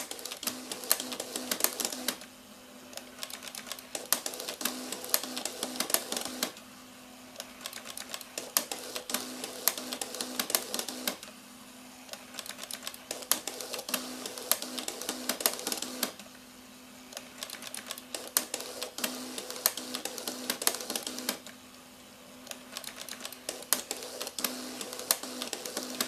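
Canon X-710 colour plotter, an ALPS pen-plotter mechanism, printing text in several colours: its pen carriage and paper feed make rapid clicking and ticking in bursts of a few seconds, about six in all, separated by short pauses, over a steady motor hum.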